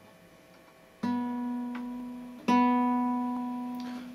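Open B (second) string of a nylon-string classical guitar plucked twice, about a second in and again about a second and a half later, each note ringing out and slowly fading. It is the reference pitch for tuning that string by ear to standard tuning.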